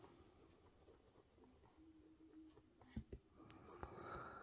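Very faint sound of a Waterman Carene's 18-karat gold medium nib writing on paper: mostly near silence, with a few light ticks and scratches in the last second and a half.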